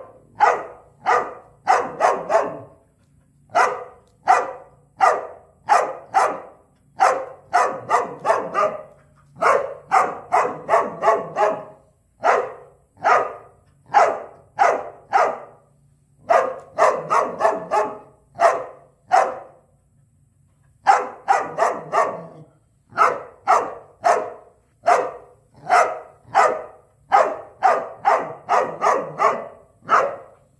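A dog barking over and over in a long string of short single barks, about one to two a second, sometimes bunched into quick flurries, with a few brief pauses.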